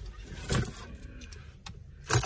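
A thump about half a second in and a fainter click later, with handling and rustling noises as someone shifts about in a car seat, over a low steady hum inside the car.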